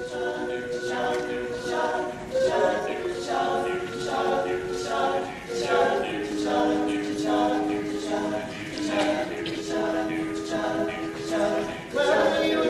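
Male a cappella group singing in close harmony: several voices holding chords under rhythmic, pulsing syllables.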